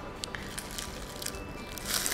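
Soft background music, with a few small knocks from a kitchen knife and a pineapple being handled. Near the end comes a short rustling crunch as the pineapple's leafy crown is gripped and twisted by hand.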